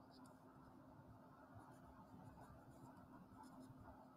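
Faint scratch of a Sharpie felt-tip marker writing on paper, in short irregular strokes.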